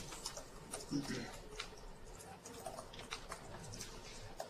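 Faint, irregular small clicks and ticks in a quiet room, with a short low voice sound about a second in.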